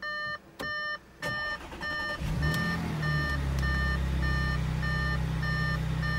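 The Audi S5's dashboard warning chime beeps steadily, about twice a second. About two seconds in, the engine starts and settles into a steady idle under the continuing chimes.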